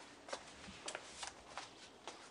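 A few soft footsteps on an indoor floor, faint and uneven in spacing.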